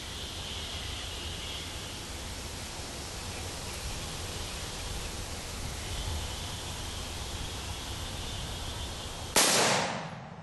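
A single shot from a Bushmaster AR-15 rifle about nine seconds in, a sudden loud crack that dies away within half a second. Before it, a steady high insect drone comes and goes over outdoor background noise.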